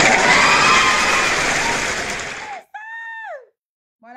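Crowd cheering sound effect, loud at first and fading over about two and a half seconds, followed by a short pitched call that slides downward. It plays as a welcome when a guest enters the live stream.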